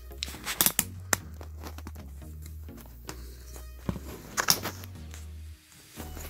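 Background music with a steady, stepping bass line, and a few sharp clicks near the first second and again about four and a half seconds in.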